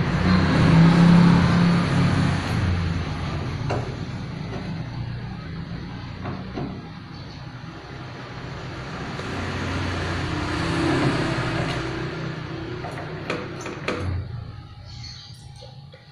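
A motor vehicle's engine running nearby, swelling louder twice and fading out near the end, with a few light clicks.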